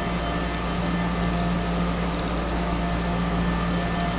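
Steady electrical hum and hiss, the noise of an old home-video sound track, with no other event standing out.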